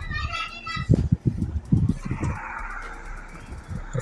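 A high-pitched voice, like a child's, in the background for about the first second. It is followed by a run of dull low thumps and knocks, the loudest sounds here, then a soft low murmur.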